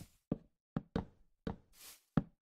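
A series of sharp knocks, about five in two seconds at irregular spacing, with a short hiss near the end.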